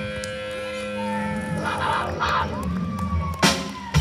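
Live rock band on electric guitars, bass and drums, holding sustained chords. A long note glides slowly downward in the second half, and a sharp drum hit lands near the end.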